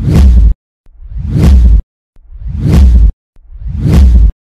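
Whoosh sound effects of a channel logo animation: a series of loud swells, each growing over about a second with a deep low end and then cutting off suddenly, repeating about every 1.3 seconds.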